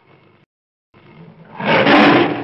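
A big-cat roar put to a picture of a kitten. It swells from about a second in and is loudest near the end. A short faint sound comes first.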